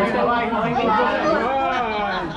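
Several people talking over one another in lively group chatter.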